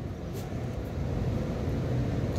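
Steady low background rumble, with a faint click about half a second in.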